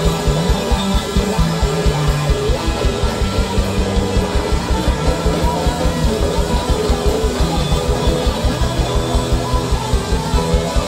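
A live funk band with horns, guitar, bass and drums playing loudly, driven by a steady, fast bass-drum beat.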